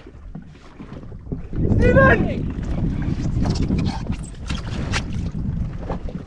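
A large snapper being scooped from the water in a landing net and hauled aboard a jet ski: splashing, knocks and rattles of the net and rod, over a rumble of wind on the microphone that starts about a second and a half in.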